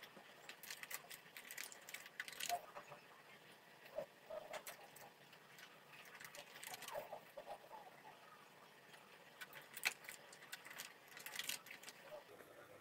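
Faint computer keyboard typing: irregular clusters of sharp key clicks with short pauses between them.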